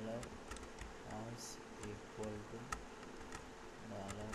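Computer keyboard being typed on: about ten separate keystroke clicks at an uneven pace. Under them runs a faint, low buzzing hum whose pitch wavers.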